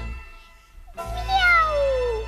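A long meow begins about a second in and falls steadily in pitch, over a held low musical note.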